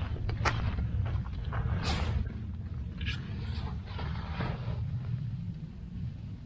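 Footsteps crunching irregularly on desert gravel, over a steady low rumble of wind on the microphone.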